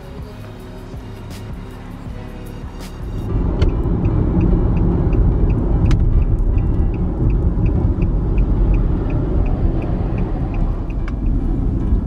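Background music for the first three seconds, then the cabin noise of a car driving: a steady low road and engine rumble. Through the middle a turn signal ticks evenly, a little over twice a second.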